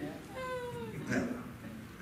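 A single high-pitched, drawn-out vocal call that falls slightly in pitch, followed by a short spoken "yeah": a congregation member answering the preacher.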